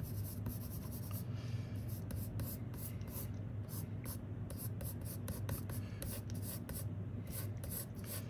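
4B graphite pencil scratching quick short strokes on sketch paper, about two to three strokes a second, laying in hair texture as lines.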